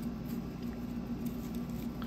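Small plastic zip bags of bearings rustling and crinkling lightly as they are handled, with faint small ticks, over a steady low hum.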